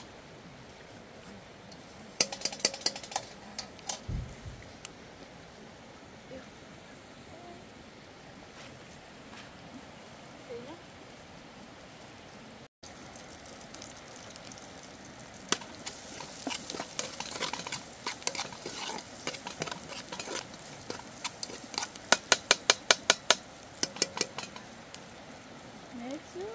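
Food frying and being stirred in an aluminium pot on a portable gas burner: a steady sizzle with scattered sharp clicks and crackles, a quick flurry about two seconds in and a rapid run of them near the end.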